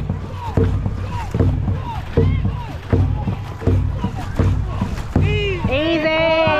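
Dragon boat crew paddling hard in a steady rhythm of about one stroke every three-quarters of a second, each stroke marked by a splash and a short shouted call. Near the end the strokes stop and a long shout goes up as the crew crosses the finish.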